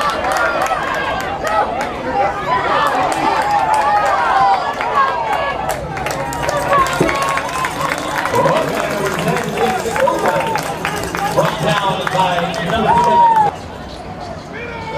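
Spectators at a youth football game shouting and cheering during a play, many voices overlapping, with scattered sharp clicks. The shouting drops off suddenly just before the end.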